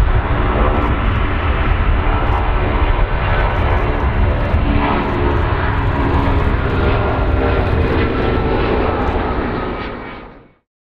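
Jet airliner's turbofan engines at takeoff power as it rolls down the runway and lifts off: a loud, steady rumble with an engine whine that climbs slightly, fading out near the end.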